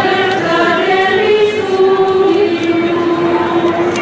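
Voices singing a slow devotional melody in long held notes, rising slightly partway through, then stepping down and holding a lower note to the end.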